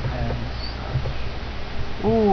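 Steady hiss with a low hum underneath, with two faint, short vocal sounds, one just after the start and one about a second in.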